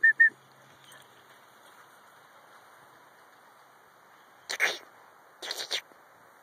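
A person's quick run of short whistled chirps at one pitch, calling a dog, right at the start. Then two short breathy bursts, about a second apart, near the end.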